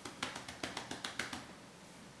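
Pencil strokes on paper: a quick run of about ten light, faint taps and scratches over the first second and a half, then stopping.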